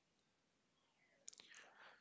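Near silence: room tone, with a couple of faint clicks near the end.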